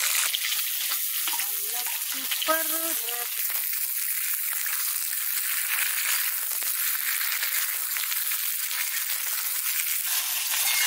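Sliced pointed gourd (parwal) sizzling as it fries in hot oil in a kadhai, a steady frying hiss.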